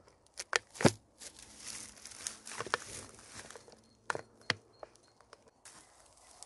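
Blue electrical tape being pulled off its roll and wound around a plastic bottle and a birch trunk: a few sharp snaps and clicks, with a stretch of rasping tape pulled off the roll from about one to three seconds in.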